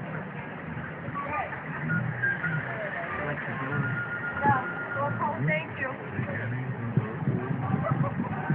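Indistinct voices talking over background music.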